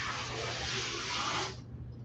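Steam iron releasing a burst of steam onto fabric: a steady hiss lasting about a second and a half, then cutting off.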